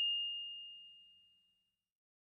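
Tail of a single high bell-like 'ding' notification sound effect: one clear ringing tone fading away over about a second and a half.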